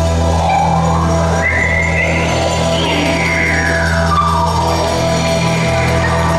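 Live rock band music in a bar: a sustained low drone with a high tone that sweeps up and then back down through the middle.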